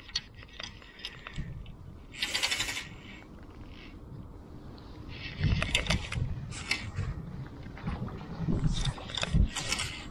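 Fly reel and line worked by hand while playing a hooked trout: a short burst of fast clicking about two seconds in, then scraping and knocks of the line and rod being handled.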